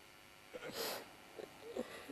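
A person's single short, breathy intake of breath, like a sniffle, about half a second in, with faint brief voice sounds after it.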